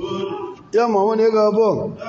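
Speech only: a man preaching, his voice picked up by microphones, drawing one syllable out into a long held, chant-like tone in the second half.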